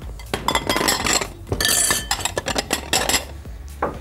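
Metal spoon clinking and scraping against a glass bowl of thick Caesar dressing, in a quick series of sharp clinks.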